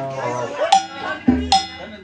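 Two sharp, ringing metallic strikes on the drum kit of a tamborazo band, about a second apart, with a deep bass-drum thump just before the second.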